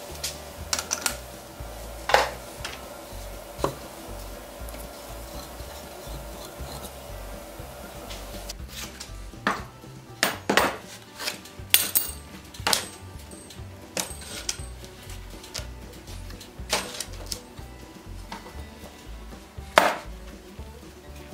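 Steel wagon hub bands clinking and clanking as they are picked up, set down and stacked on one another, a run of sharp metallic strikes in the second half. Before that there is a steady hum with a few knocks, and the hum stops about eight seconds in.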